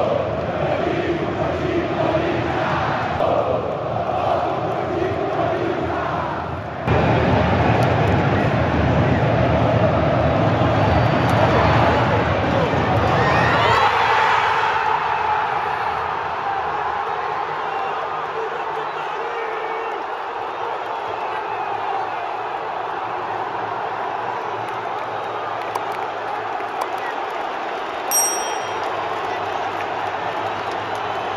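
A stadium crowd of football fans chanting together, then a louder mass roar of cheering that is at its loudest through the middle before settling into steady crowd noise. The cheering is fans celebrating a goal. A short high-pitched beep sounds near the end.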